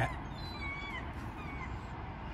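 Faint bird chirps, a few thin whistling calls about half a second and a second in, over a steady low background noise.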